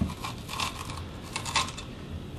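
Kitchen knife cutting the seed core and veins out of a raw green bell pepper on a wooden cutting board: a few light, crisp clicks and snaps as the blade cuts through the crunchy flesh.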